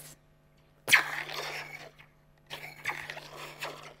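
Metal slinky hanging from a plastic bowl, set vibrating so the bowl amplifies the spring: the sci-fi laser-blaster sound, heard twice, each zap starting sharply and ringing away, the first about a second in and the second a second and a half later.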